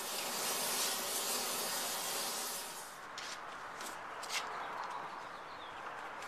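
Oxy-fuel torch flame hissing steadily as it heats a steel bar for a bend. After about three seconds the hiss drops away to a fainter one, with a few light knocks.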